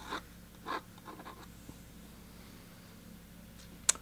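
Graphite pencil scratching on watercolour paper: a few short hatching strokes for shading in the first second and a half, then room tone, then one sharp click just before the end.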